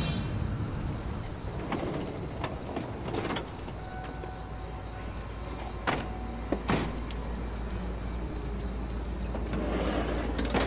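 Van engine idling with a steady low rumble, with a few sharp clunks from its doors being opened and shut; the two loudest come about six and seven seconds in.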